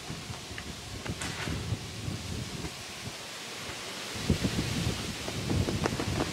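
Wind buffeting the microphone, with soft rustling, and a few dull low thumps in the last two seconds.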